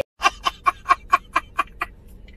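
A man laughing hard in a quick, even run of about nine short 'ha' bursts, four or five a second, starting after a sudden cut.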